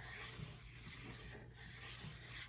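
Faint rubbing of a hand-held tool run along a paper border strip, pressing it down onto cardstock.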